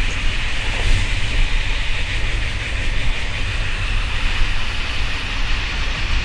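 Steady rumble and hiss of a moving passenger train, heard from inside the carriage: a deep, even drone with a band of higher rushing noise over it.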